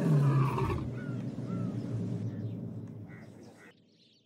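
Lion roaring: one roar, loudest at the start, that fades away over about three seconds.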